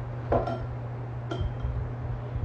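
Glassware knocking and clinking on a bar counter: a short knock about a third of a second in, then a sharp glass clink with a brief ring about a second later, over a steady low hum.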